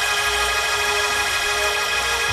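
Hammond organ holding one steady sustained chord, with a low bass note beneath it.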